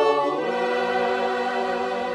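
Background choral music: voices singing long held chords, moving to a new chord about half a second in.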